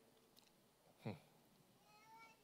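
Near silence, broken about a second in by one short, falling "hum" from a man at a microphone.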